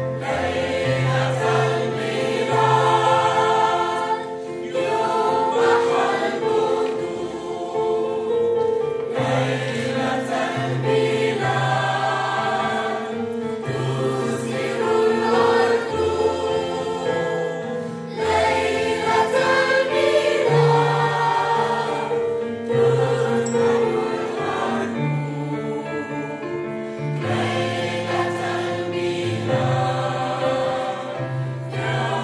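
Mixed choir of children and adults singing in harmony, with piano accompaniment holding low bass notes beneath the voices.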